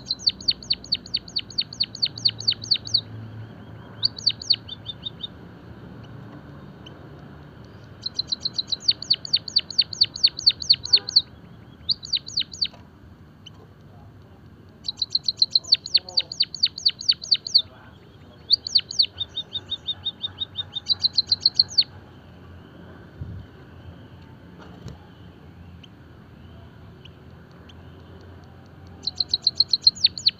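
White-headed munia singing: bouts of rapid, high, ticking notes, about five a second, each bout lasting one to three seconds with short pauses between. The song stops for several seconds near the end, then starts again just before the end.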